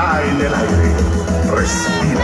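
Live band music played loud over a PA system, heard from within the audience, with a heavy steady bass and a few high gliding notes over the top.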